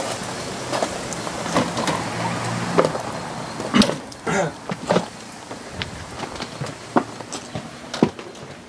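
Footsteps and knocks as someone climbs the wooden entry steps into a motorhome through its side door, with a low steady hum under the first few seconds.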